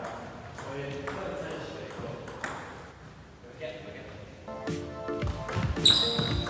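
Table tennis ball bouncing with short, high, ringing clicks about twice a second, then a louder, sharper ball hit just before the end as a rally starts, over background music.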